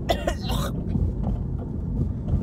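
A woman coughs, two short coughs in the first second, over the steady low rumble of a car's cabin on the road.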